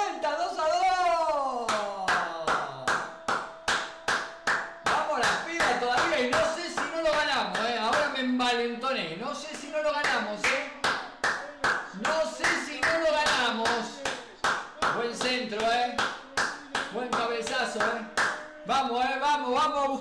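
A man clapping his hands over and over in a steady rhythm, a couple of claps a second, cheering a goal.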